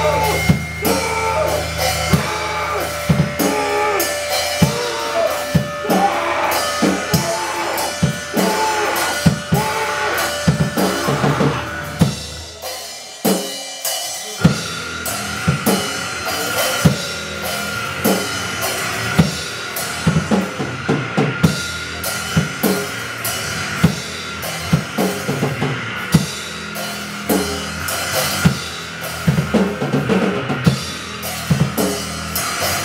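Raw punk noise band playing live: fast, dense drum-kit hits over a bass and synthesizer wall of noise. About 13 seconds in the low end drops out for a second or two, then the drums come back in with a steady high-pitched tone held over them.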